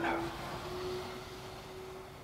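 Quiet room tone with a faint, steady hum, and a soft hiss fading out in the first half second.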